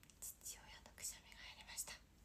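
A young woman whispering softly under her breath, a few short breathy phrases.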